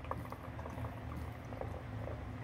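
A thin stream of water trickling from a clear plastic tube into a shallow plastic catch basin, with many small splashes and gurgles. The tube is pinched to throttle the flow down to a low, sustainable rate.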